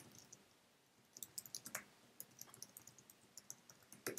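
Faint typing on a computer keyboard: scattered, irregular key clicks starting about a second in, as a file name is entered.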